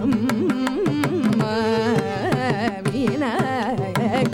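Carnatic vocal music: a female voice sings with quick oscillating gamaka ornaments, shadowed by violin over a steady drone, while the mridangam plays a running pattern of crisp strokes.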